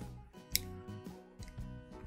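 A single sharp click about half a second in from a Boker S-Rail retractable utility knife being flicked: the blade does not come out, because its slider needs constant pressure to deploy. Quiet background music runs underneath.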